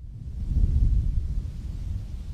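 Wind buffeting an outdoor microphone: a low rumble that swells about half a second in and eases a little toward the end.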